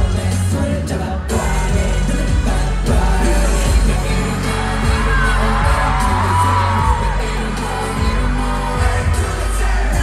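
Live K-pop concert music heard from the arena floor: a loud pop track with a heavy bass beat and singing, with the crowd whooping and cheering along.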